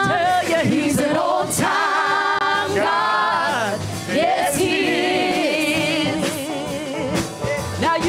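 A small gospel vocal group singing together in harmony into handheld microphones, with wavering held notes.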